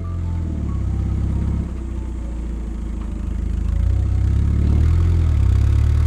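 1954 Triumph TR2's four-cylinder engine running as the car is driven, a steady low rumble that grows louder about four seconds in.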